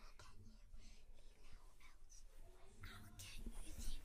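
Faint whispering voices, a scatter of short hissed sounds with no full-voiced speech.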